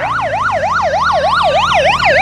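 Emergency-vehicle siren in fast yelp mode: a rapid up-and-down wail, about five sweeps a second, growing slightly louder.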